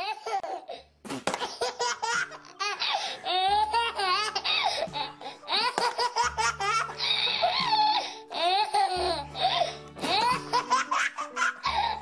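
A baby laughing in repeated fits, with short breaks between them, over background music with a steady bass.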